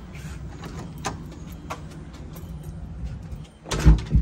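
A front door being opened, with a few small latch and knob clicks, then pulled shut with a loud thud near the end.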